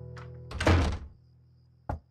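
An acoustic guitar chord rings out and fades, cut off by a door slamming shut about half a second in. Near the end comes a first sharp knock on the closed door.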